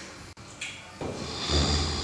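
A person's noisy breathing, rough and breathy, growing louder about a second in.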